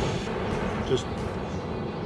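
Oxy-acetylene cutting torch burning acetylene only, with no oxygen added yet: a steady rushing flame noise from its long yellow flame.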